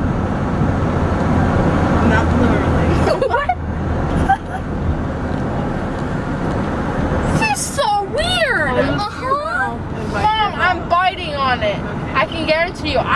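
Steady road noise inside a moving car's cabin. Past the middle, a woman's voice joins in, sliding up and down in wide pitch swoops without clear words.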